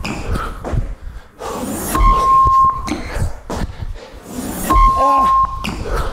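Workout interval-timer beeps, a steady mid-pitched tone lasting under a second, sounding twice about three seconds apart. Between them come thuds of feet and hands hitting the floor as the athlete drops down and springs back up on each beep.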